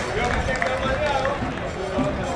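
Several voices calling out at once across a football pitch, over steady open-air stadium noise.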